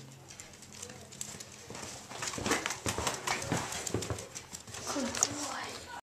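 Jack Russell Terrier puppy's paws and claws scrabbling and tapping on a pen floor in quick, irregular clicks, getting busier and louder about two seconds in.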